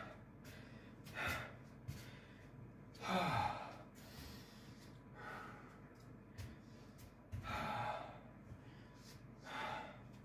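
A man breathing hard after a 15-second all-out burst of high kicks: heavy exhalations about every two seconds. The longest is a voiced sigh about three seconds in.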